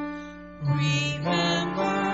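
A cantor singing the responsorial psalm of the Mass, with instrumental accompaniment holding notes underneath. A sung note fades, and a new phrase starts about half a second in.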